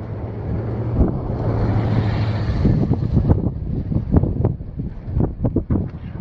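Strong wind buffeting the microphone over the steady low hum of a running vehicle engine. A gust swells about two seconds in, and the second half is full of irregular rumbling buffets.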